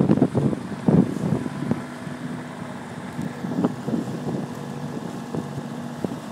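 Motorboat engine running with water rushing along the hull, and wind buffeting the microphone in gusts, strongest in the first second or two, settling into a steady hum.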